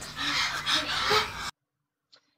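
Young children making the /h/ sound together, a string of breathy puffs with a little voice mixed in. It cuts off suddenly about a second and a half in.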